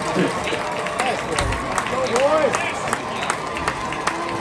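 Stadium crowd sound: nearby spectators' voices talking and calling out, with scattered sharp claps or clicks over a steady murmur, and a faint steady tone underneath.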